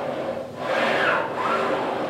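Cable running back and forth over the pulley of a FreeMotion cable strength machine as a leg pedals the foot stirrup in a bicycling motion: a rasping, rubbing whirr that swells twice.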